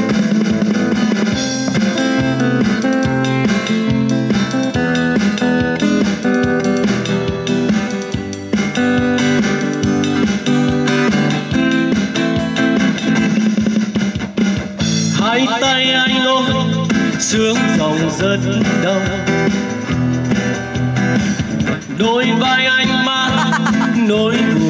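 Live acoustic guitar and keyboard playing an instrumental passage over a steady beat. About 15 seconds in, and again near the end, a higher wavering melody line comes in over the accompaniment.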